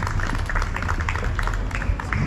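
Live band music: a steady low bass under quick, sharp percussive hits.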